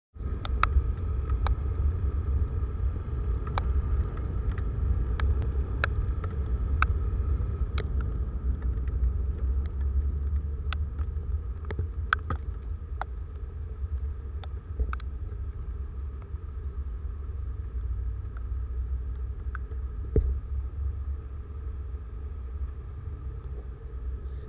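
Motorcycle riding on a wet road in the rain: a steady low wind rumble on the microphone with the bike and tyres running under it. Sharp ticks of raindrops hitting the camera come often in the first half and thin out later.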